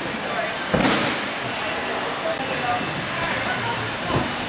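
A single sharp thud of a jumper's impact on gym mats about three-quarters of a second in, over a steady hiss of room noise.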